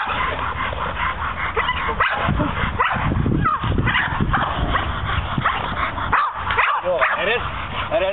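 Dogs yipping and whining, excited during bite-rag tug work, over a steady low rumble and people's voices.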